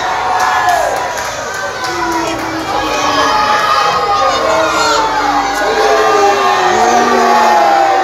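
Wrestling crowd shouting and cheering, many voices calling out over one another without a break.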